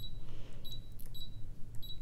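Touchscreen key beeps of a Brother ScanNCut 2 (CM350) cutting machine as its screen is tapped with a stylus: four short, high beeps about two-thirds of a second apart, each confirming a touch while objects are selected on the screen.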